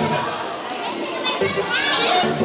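A crowd of children shouting and cheering while the dance music drops out for a moment, the high voices growing louder toward the end.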